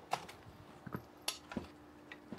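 A few light metallic clicks and knocks from a Barrett M82A1 rifle being handled as its takedown pins are worked, about four short clicks over two seconds.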